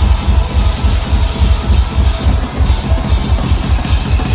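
Loud live concert music over the stage PA, driven by a heavy, steady kick-drum beat with bass underneath.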